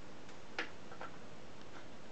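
Portable record player with its stylus in the run-out groove of a 7-inch single after the music has ended: a steady surface hiss with a few soft clicks.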